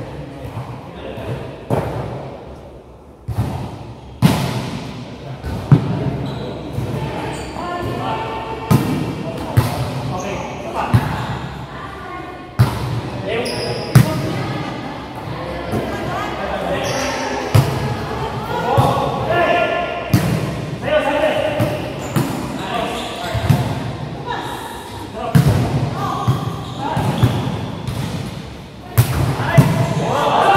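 Volleyball being played: repeated sharp slaps of hands and forearms on the ball as it is passed, set and hit, echoing in a large gymnasium. Players' voices call out between the hits.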